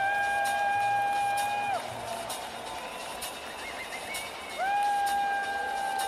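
Electronic techno music: a held synth note slides into pitch, sounds for about two seconds, then slides away. It returns near the end, over a faint ticking about twice a second.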